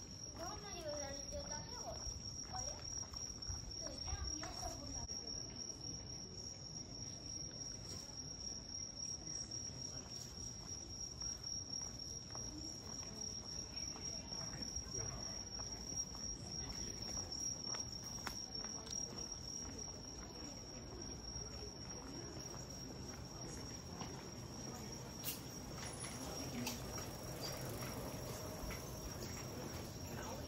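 Night insects singing: one steady, unbroken high-pitched trill, over the soft background hum of the street.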